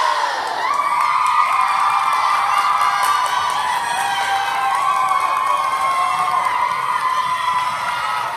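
A large crowd of children cheering and screaming together in a school gym, a steady, unbroken chorus of high voices.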